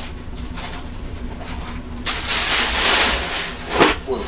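Tissue paper rustling and crinkling as a sneaker is pulled from its shoe box. It gets much louder about halfway through, and a single sharp knock comes near the end.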